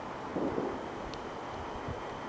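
Quiet outdoor background: a steady low hiss with light wind buffeting on the microphone, and a soft brief sound about half a second in.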